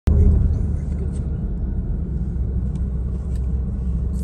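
Steady low rumble of road and engine noise inside a moving car's cabin, the car driving at speed.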